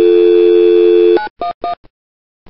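A steady North American telephone dial tone, the two-note hum of 350 and 440 Hz, cuts off about a second in. Three short touch-tone keypress beeps follow in quick succession, dialling 9-1-1.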